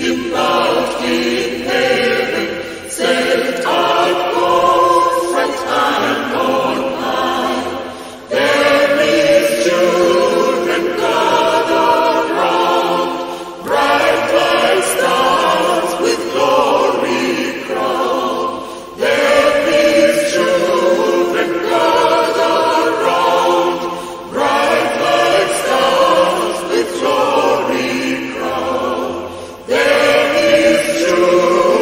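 A choir singing an English hymn, phrase by phrase, with a short breath-like dip between phrases about every five seconds.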